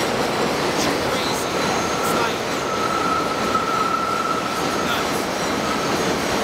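Elevated train passing overhead: a loud, steady rumble of wheels on the rails, with a long high-pitched wheel squeal from about a second in until near the end.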